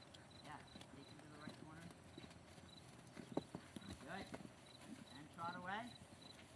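Faint hoofbeats of a cantering horse on a sand arena footing, with one sharper knock in the middle. A person's voice calls out twice in the second half.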